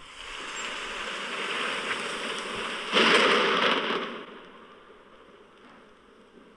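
Recorded sound of heavy monsoon rain, a steady hiss that swells about three seconds in and then fades out. It is played as the sound of the monsoon's early arrival.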